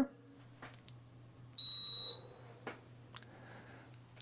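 Mxmoonfree 5000 W pure sine wave power inverter giving a single high-pitched beep about half a second long as it is switched on, over a faint steady low hum.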